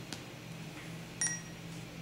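A short, high electronic beep from a Sapphire infusion pump about a second in, as its touchscreen unlock button is pressed, over a faint steady low hum.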